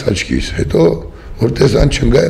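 A man speaking in Armenian, close to the microphone, with a short pause near the middle.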